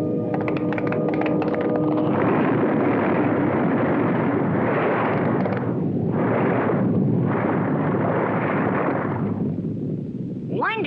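A cartoon sound effect of a long rumbling roar, swelling and dipping in waves for several seconds and fading near the end. It follows a couple of seconds of music with clicks at the start.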